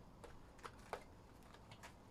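Faint, scattered light clicks and taps of a cardboard trading-card box being handled and its lid opened, the sharpest click just before a second in.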